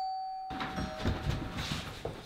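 A doorbell chime rings out as one clear tone and fades away over about a second and a half. Under it, from about half a second in, come scuffling footsteps and clothing movement at a doorway.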